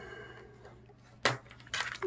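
Quiet room tone broken by two short light clicks, one about a second in and another near the end, from a multimeter and its test probes being handled.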